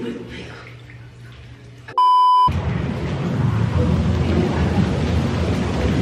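A half-second steady electronic test-tone beep, as used with a TV colour-bars card, about two seconds in. Then hot-tub jets running, the water churning with a loud steady rush.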